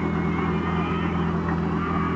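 Portable fire pump's petrol engine running steadily at a constant speed, an even, unchanging hum while suction hoses are being coupled to it.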